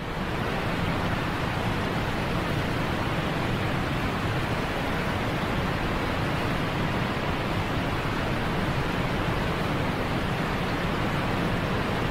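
Rushing water of fast river rapids and small waterfalls, a steady, even roar.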